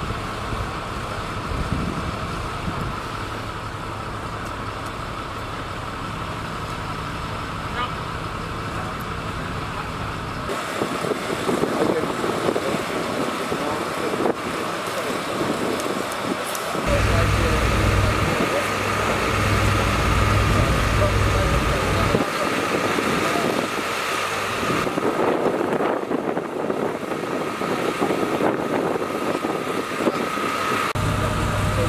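Engines running steadily at a road-crash rescue, from fire engines and the power unit driving the hydraulic rescue tools, with a constant high whine and the voices of the crew. The sound changes abruptly several times, and the engine is louder and deeper for a few seconds just past the middle.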